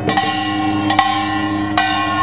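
Korean pungmul percussion: brass gongs struck in a loose rhythm, three strong strikes ringing out with a bright, long metallic ring, and drum beats faintly underneath.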